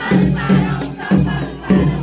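Traditional Nepali procession drums, the damaha among them, beating a steady march rhythm of about two strokes a second, with a crowd's voices shouting over them.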